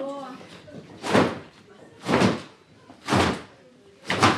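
A large woven checked cloth being shaken and flapped, three short loud whooshing snaps about a second apart. A woman's voice trails off at the very start.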